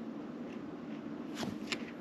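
Trading cards being handled and slid through a stack in the hands: soft card-stock rustling, with two faint flicks about a second and a half in as the next card comes off the front of the pile.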